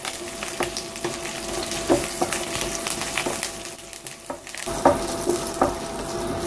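Curry leaves, split dal and dried red chillies frying in hot oil in a nonstick pan, sizzling and crackling steadily, while a wooden spatula stirs them and knocks against the pan a few times.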